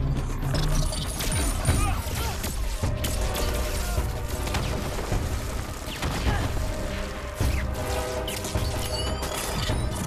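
Sci-fi film action mix: repeated explosions and blasts going off in quick succession over a dramatic music score.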